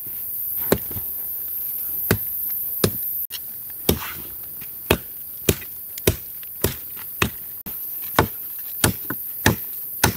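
Machete chopping dry wood: about a dozen sharp, separate chops, coming faster in the second half.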